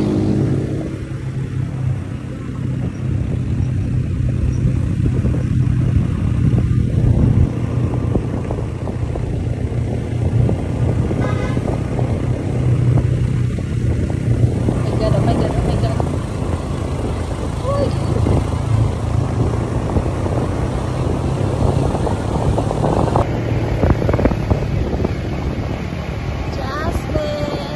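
Motorcycle engine running steadily under way, with a constant rush of wind and road noise.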